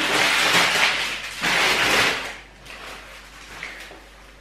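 Plastic packaging rustling and crinkling as groceries are handled, loud for about the first two seconds, then fainter handling noises.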